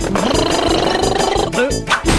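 A cartoon character's long, wavering vocal cry over background music, ending with a quick upward swoop near the end.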